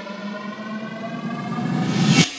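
Build-up of an electronic dance track: a siren-like synth tone creeps slowly upward in pitch while a noise sweep swells louder, climbing to a peak at the very end.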